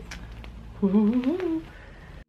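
A woman hums briefly about a second in, a short wavering note that climbs in pitch, over light crackles of a stretchy fake spider-web decoration being pulled apart.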